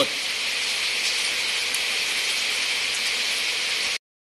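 Steady hiss with no pitch, strongest in the upper range and even in level throughout, cutting off suddenly at the end.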